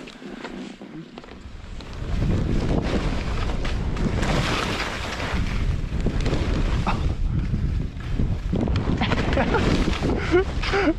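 Wind buffeting the camera microphone and skis scraping over chopped-up, bumpy snow on a fast downhill run, growing loud about two seconds in.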